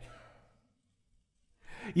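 A man's speaking voice trails off, then there is about a second of silence. He takes an audible breath in just before he starts speaking again.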